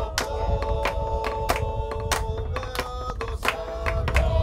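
A group of Fijian voices singing a welcome song in harmony, with long held notes, over a steady beat of sharp wooden strikes, about three a second, from sticks beaten on a log with hand claps.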